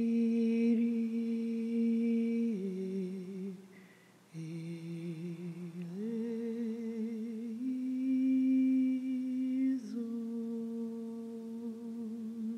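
A solo voice humming a slow, wordless melody in long held notes with gentle vibrato. It steps down in pitch, breaks off briefly about four seconds in as if for a breath, then rises again.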